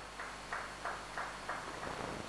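Light, scattered hand clapping from a few people, about three faint claps a second.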